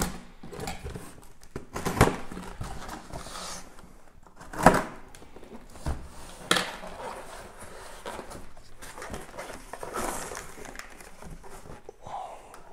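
A cardboard shipping box being handled and opened: cardboard rustling and scraping, with three sharp knocks as the box is bumped or set down, the loudest just before the middle.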